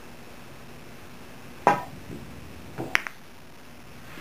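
A pool cue tip strikes the cue ball with a sharp click at a little under lag speed, played with high right english. About a second later there is a softer knock as the cue ball kicks off the cushion, then a sharp, ringing click as it hits the 7 ball, with a faint knock just after. A low room hum runs underneath.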